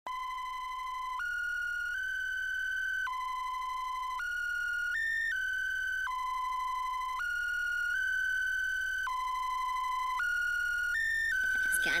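A bright single-line synth melody of held notes stepping up and down, the same phrase looping about every three seconds, with no drums: the intro of a hard trap beat.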